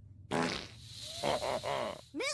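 A long cartoon fart sound effect, the gag noise of a rude cartoon character, followed by a short laugh near the end.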